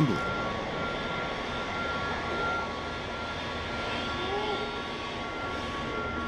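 Steady rushing, jet-like machinery noise with two faint steady high tones running through it, holding an even level.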